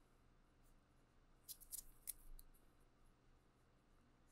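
Near silence, with a few faint clicks and taps in the middle from a hard plastic graded-card slab being handled and turned over.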